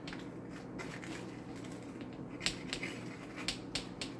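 Rolling pizza-cutter wheel slicing through a baked pizza crust on a metal pizza pan: a scatter of small, sharp clicks and crunches over a steady low hum.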